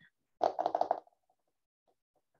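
A woman's short, soft laugh in quick pulses, lasting under a second, then quiet.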